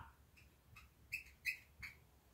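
Marker tip squeaking on a glossy LED writing board as letters are written: three short, high squeaks, starting about a second in.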